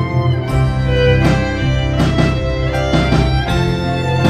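String ensemble of violins and cello playing an original piece: sustained bowed violin notes over a low cello line, with a regular percussive beat about every three-quarters of a second.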